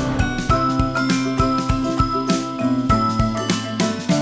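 Background music: pitched melody notes over a steady, regular beat.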